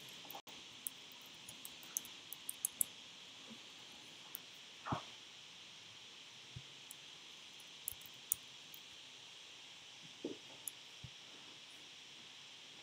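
Sharp clicks of computer keys and a mouse button as values are typed into a dialog and buttons are clicked, bunched in the first three seconds and scattered after. A duller knock comes about five seconds in, over a steady faint hiss.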